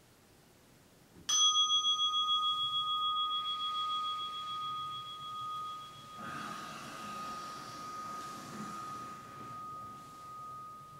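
A meditation bell struck once, ringing on with a slow pulsing wobble as it fades, marking the end of the sitting. From about midway, cloth rustles under the ring as a robed sitter bows to the floor.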